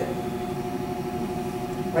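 Steady room hum with a few constant tones, the background noise of a machine such as a fan.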